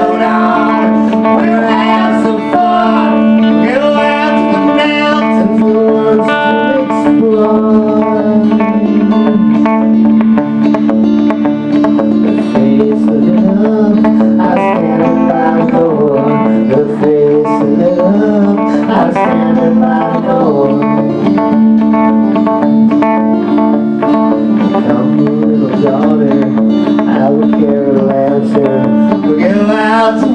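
Live country-rock band playing an instrumental passage: plucked strings carry shifting melodic lines over steady held notes, at a loud, even level throughout.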